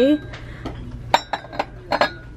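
Ceramic mugs clinking against one another and the shelf as they are picked up and set down, several sharp clinks with a short ring in the second half.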